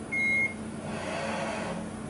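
A single short electronic beep as the CMM's touch-trigger probe registers a contact point on the part. About a second later comes a softer whir as the machine's axes drive the probe to its next point, over a steady low machine hum.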